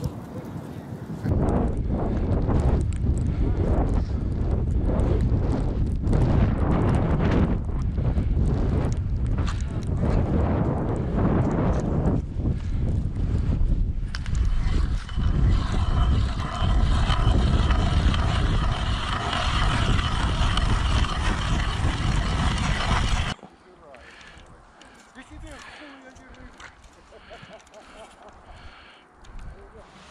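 Strong wind buffeting the camera microphone in a snowstorm, a loud, uneven rumble. About halfway through, a steady hum at several pitches joins it. Both cut off abruptly about 23 seconds in, leaving quiet.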